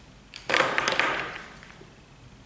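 A short clatter of plastic felt-tip markers being tossed aside onto a table, starting about half a second in and dying away over about a second.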